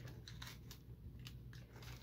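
Faint rustling of a thin paper coffee filter being folded and pressed flat by hand, with a few soft crinkles.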